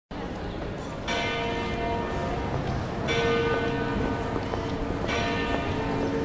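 A large bell tolling slowly: three strokes about two seconds apart, each ringing on with several steady overtones until the next, over a low steady background rumble.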